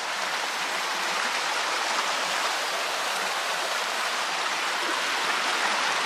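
A woodland stream running close by: a steady, even rush of water.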